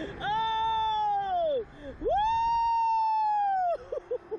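A woman's long, high-pitched wailing screams on a reverse-bungee thrill ride: two held cries of about one and a half seconds each, each dropping in pitch as it ends.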